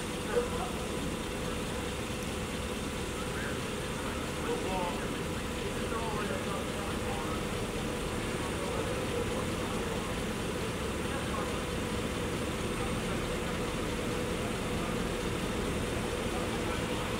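Parked police SUVs idling with a steady hum, under faint, distant voices; a short knock comes about half a second in.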